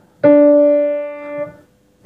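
A single piano note struck about a quarter second in and held, fading until it is released about a second and a half in, then another note begins at the very end. Each note is held for two beats as a minim (half note).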